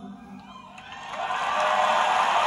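Crowd cheering on a live music recording played back through a tube amplifier: the song's last notes die away, then the cheering swells up about a second in and holds.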